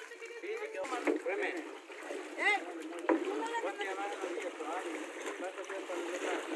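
Water splashing and sloshing around a loaded aluminium rowboat as it is pushed off with a wooden pole, with a few sharp knocks. Several voices chatter over it.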